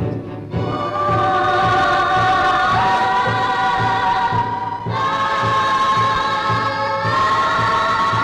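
Devotional film score: a choir holds long sustained chords, rising in steps about three, five and seven seconds in, over a steady low drumbeat of about two strokes a second.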